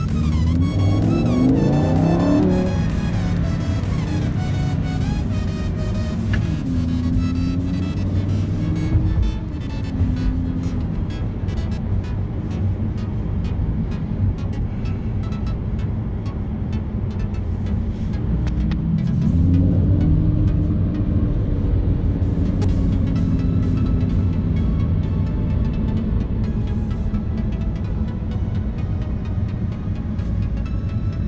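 Lamborghini Huracán's V10 engine heard from inside the car as it accelerates, its pitch climbing steeply in the first couple of seconds and again about twenty seconds in, then settling to steady cruising. Background music with a steady beat plays throughout.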